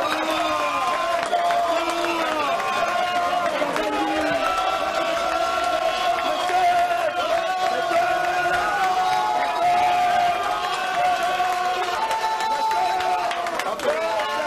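A group of men singing and chanting together in a celebration song, with hand-clapping.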